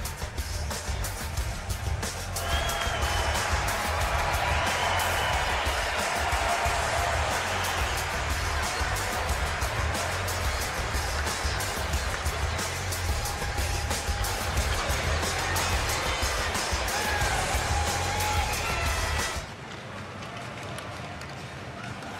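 Arena music with a heavy pulsing beat over crowd noise during player introductions. About nineteen seconds in it cuts off suddenly to quieter arena crowd ambience.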